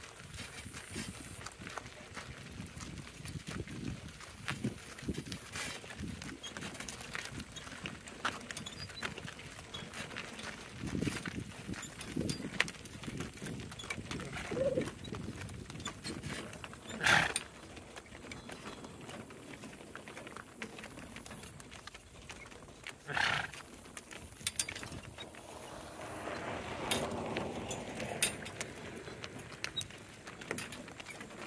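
A pair of harnessed donkeys walking and pulling a cart over gravel: a steady patter of hoofbeats and crunching gravel, with two louder sharp knocks in the middle.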